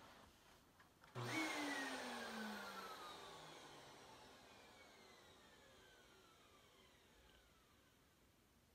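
A sudden whirring whine starts about a second in, then slides steadily down in pitch and fades away over the next six seconds, like a motor spinning down.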